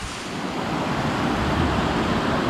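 A mountain stream rushing over rocks and small cascades: a steady rush of water.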